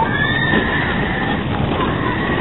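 Arrow/Vekoma suspended roller coaster train running along its track, a steady rumble with rushing air. A high squeal, falling slightly in pitch, is heard through the first second.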